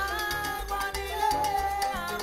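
Salsa music playing, with long held notes over a pulsing bass line.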